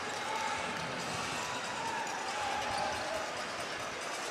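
A basketball being dribbled on a hardwood court, over the steady background noise of an arena crowd.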